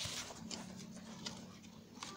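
Faint background music with soft, irregular rustling and light tapping over it, loudest near the start.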